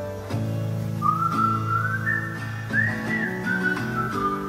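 Background pop song: a whistled melody enters about a second in and climbs, over plucked and strummed acoustic guitar chords, with no singing.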